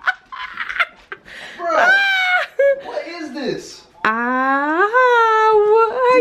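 Wordless vocal reactions to a mouthful of spicy food: drawn-out cries and laughter, ending in a long, high wail that slowly falls in pitch over the last two seconds.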